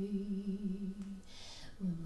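A woman singing solo into a handheld microphone in a husky voice. She holds a low note that wavers slightly and fades out a little over a second in. After a breath, the next word, "where", starts on a similar low note near the end.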